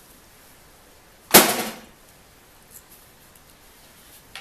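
A single sharp knock about a second and a half in, with a short ringing tail, from something hard being put down or landing.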